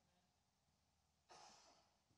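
Near silence, then a single short breath into a handheld microphone about a second and a half in, fading out.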